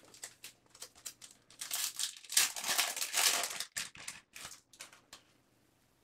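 Foil wrapper of a baseball card pack crinkling and tearing as it is opened by hand: a dense spell of crackling through the middle, with lighter scattered crinkles and clicks before and after.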